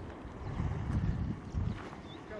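Wind buffeting the microphone outdoors: an uneven low rumble that swells about a second in and again near the end.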